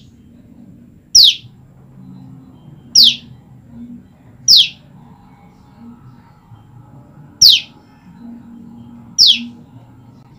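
Female common tailorbird calling: five loud, sharp single notes, each a quick falling whistle, repeated every one and a half to three seconds. These are her calls to a mate she has been separated from.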